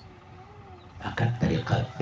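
A man's voice speaking, starting about a second in after a brief quiet lull that holds only a faint wavering hum.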